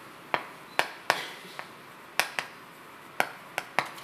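A stick of chalk tapping against a chalkboard with each stroke of handwriting: a string of sharp, irregular taps.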